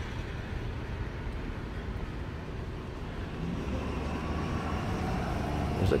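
Outdoor street ambience: a steady low rumble of road traffic, swelling slightly in the second half.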